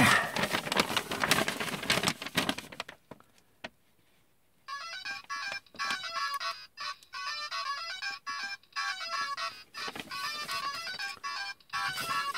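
A tinny electronic melody, stepping note by note like a ringtone, starts about five seconds in from the small speaker of a Bandai DX Climax Phone, the Kamen Rider Den-O toy phone. Before it there are a few seconds of rustling noise with clicks, then a short silence.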